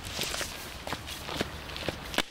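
Footsteps crunching on a gravel path, a person walking at an even pace of about two steps a second.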